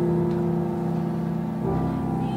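Music from a musical theatre duet: sustained piano chords under a held note that slowly fades, with a new chord coming in near the end.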